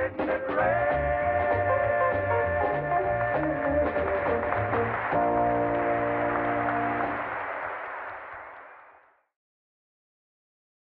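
Male vocal quartet with band backing singing the closing bars of a gospel song, then holding a final chord from about five seconds in. The chord gives way to a noisy wash that fades out about nine seconds in.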